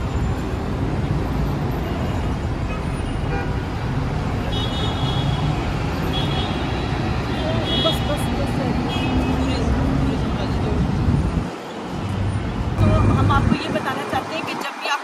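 Steady city traffic rumble with brief high-pitched toots several times in the middle; the rumble drops away sharply near the end.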